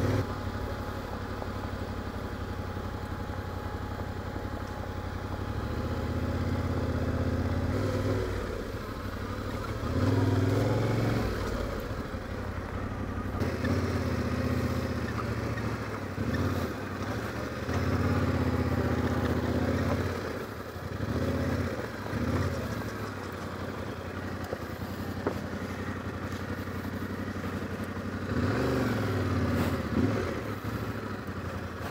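Yamaha Ténéré 700's parallel-twin engine running under way on a gravel track, the throttle opening and easing off in repeated surges.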